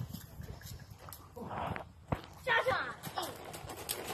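Hoofbeats of a pony walking on gravel, a few scattered knocks, with faint voices in between.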